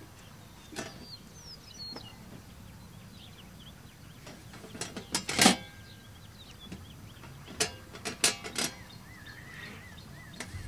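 Pigs working the hinged metal lid of an automatic hog feeder, which knocks and clanks sharply a few times as they nose it up and let it drop, the loudest clank about halfway through and a quick run of them later. Birds chirp faintly in the background.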